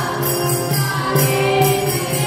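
Devotional chant sung by a group of voices holding long notes over a low drone, with jingling percussion keeping a steady beat of about two strokes a second.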